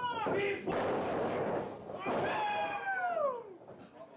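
A wrestler slammed down onto the ring canvas with one sharp thud about half a second in, amid crowd shouting. Later a single long shout falls steadily in pitch.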